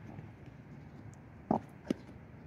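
Faint steady background, broken by two short thuds about a second and a half and two seconds in.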